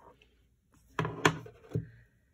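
Three quick knocks and clatters about a second in, from objects being handled and set down on a wooden tabletop.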